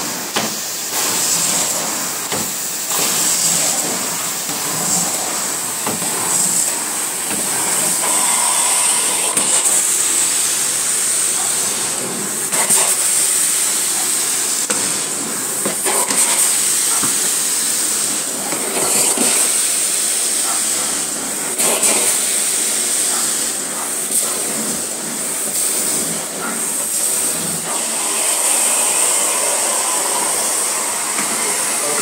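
Carpet-cleaning extraction wand spraying and sucking water through carpet: a steady, loud hiss and rush of suction with a high whistle over it, swelling and dipping slightly as the wand is worked back and forth.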